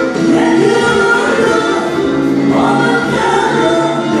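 Two women singing a song together into microphones, amplified, with music playing along.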